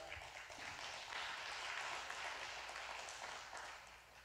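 Congregation applauding faintly, swelling about a second in and dying away near the end.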